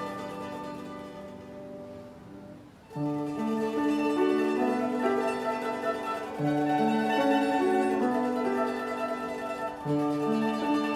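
Mandolin ensemble of two mandolins and a mandola with piano playing a slow piece: a held chord fades away over the first three seconds, then a new phrase begins about three seconds in, with long held melody notes moving step by step over low piano bass notes.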